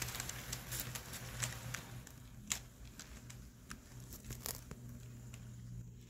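Model railroad passenger cars rolling along the track, their wheels giving irregular sharp clicks that thin out toward the end, over a steady low hum.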